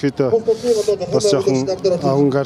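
A man speaking Mongolian into a handheld microphone.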